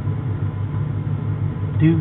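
A steady low mechanical hum, with a brief spoken word near the end.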